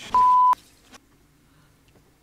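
A single steady censor bleep, a flat pure tone lasting under half a second, covering a spoken swear word.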